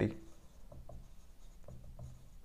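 Marker pen writing on a whiteboard: a few faint, brief strokes.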